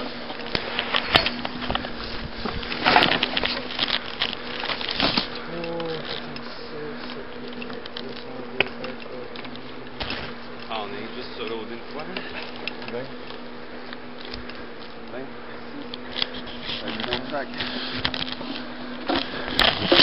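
Insects buzzing steadily close to the microphone, one constant hum throughout, over the knocks and scrapes of footsteps pushing through brush and woody debris.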